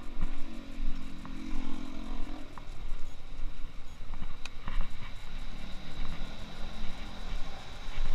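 City street traffic: a vehicle engine humming steadily for the first couple of seconds and again near the end, over constant low rumble and scattered small clicks.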